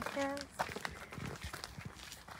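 A brief spoken word, then faint, irregular clicks and rustles with no animal calls.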